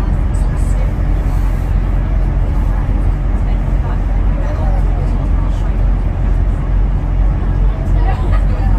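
Steady low rumble of a bus driving through a road tunnel, engine and tyre noise filling the enclosed space, with faint voices in the background.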